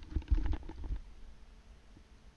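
Headset microphone handling noise: low rumbling bumps and a few faint clicks as the headset is moved into place, dying away after about a second.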